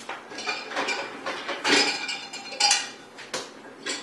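Dishes and cutlery being handled at a kitchen counter: a run of clinks and clatters, with the two loudest knocks a little before and just after the middle.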